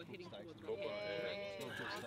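Faint, untranscribed voices of people talking at a distance, with one drawn-out vocal sound through the middle.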